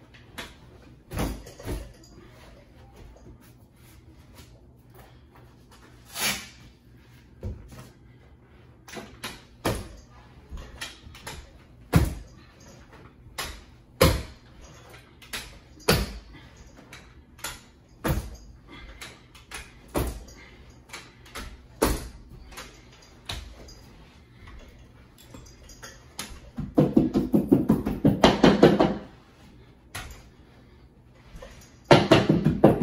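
Carpet knee kicker being bumped along the edge of a wall-to-wall carpet to stretch it onto the tack strip, giving sharp knocks about every two seconds. Near the end comes a short, dense run of rapid rattling knocks, the loudest part.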